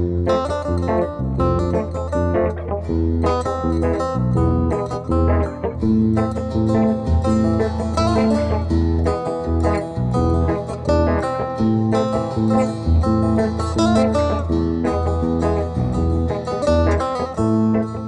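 A setar and an electric bass guitar playing an instrumental duet: quick plucked setar notes over a running bass line.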